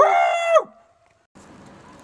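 A man's loud, high whooping yell, "Woo!", shouted from inside a corrugated metal culvert pipe, held for about half a second and ending with a drop in pitch. It cuts off, and after a short silence only faint outdoor background is left.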